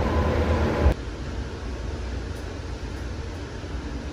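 Steady low rumble of a moving vehicle heard from inside the cabin. It drops suddenly to a quieter, even running noise about a second in.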